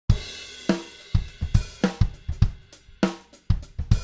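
A drum kit played in single, spaced-out strikes, about a dozen hits at an uneven rhythm, each ringing out briefly before the next.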